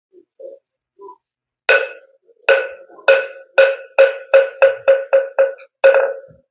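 A moktak (Korean Buddhist wooden fish) struck about eleven times, each knock ringing briefly at one pitch, the strokes quickening from a slow beat to several a second. This accelerating roll is the signal that opens a chant.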